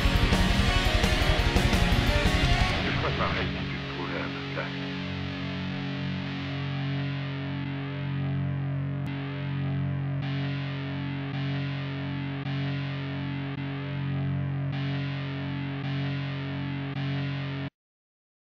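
Distorted electric guitar and drums playing a heavy metal passage that ends about three seconds in, leaving a sustained low chord that holds steady for around fifteen seconds and then cuts off suddenly.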